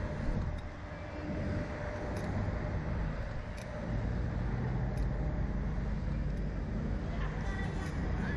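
Wind rushing over the on-board camera microphone as a Slingshot ride capsule swings and tumbles on its bungee cables: a steady, deep rush of noise with a few faint ticks.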